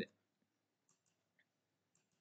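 Near silence with a few faint clicks of a computer mouse, the last one near the end.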